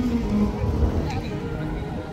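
Cello bowed in slow, held notes, over a steady low rumble.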